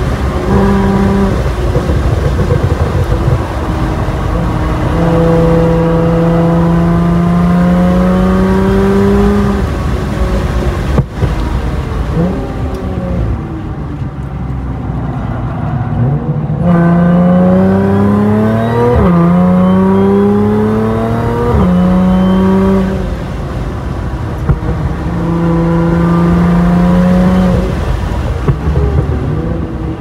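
Audi S4's engine heard from inside the cabin on a track lap. It accelerates hard several times, its pitch rising through the revs, and falls off in between as the car slows for corners.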